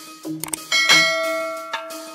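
A bright bell ding from a subscribe-button animation rings out a little under a second in and fades over about a second. Just before it come a couple of quick clicks. Background music with a steady beat runs underneath.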